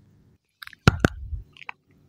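Wet mouth sounds right up against a microphone: lip smacks and tongue clicks, with a few sharp clicks about a second in.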